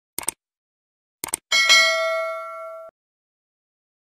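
Subscribe-button sound effect: two quick double clicks of a mouse, then a bright bell ding that rings for about a second and a half and cuts off suddenly.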